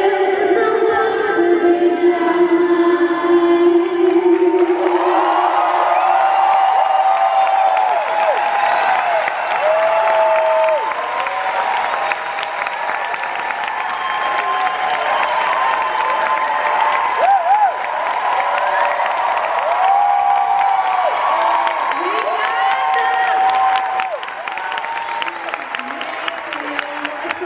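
A live song ends on a held female sung note with the band, fading out about four seconds in; then a concert audience cheers, screams and claps loudly for the rest, many high voices rising and falling over the applause.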